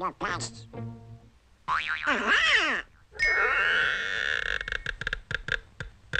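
Cartoon soundtrack: comic orchestral score mixed with Donald Duck's garbled quacking voice and cartoon sound effects, ending in a quick run of short, sharp notes.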